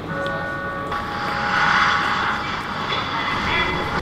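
A vehicle engine running with a steady whine, joined about a second in by a rush of noise that swells and then eases off.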